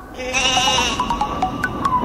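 Background music of plucked mallet-like notes at a steady beat, with a loud wavering sheep-like bleat over it for most of the first second.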